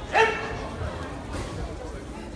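A child karateka's single sharp, high-pitched shout, rising in pitch, just after the start, the call that opens a karate kata, over low chatter in a large hall.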